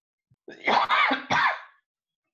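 A person coughing twice over a video-call audio feed, the first cough about half a second in and a shorter second one just after.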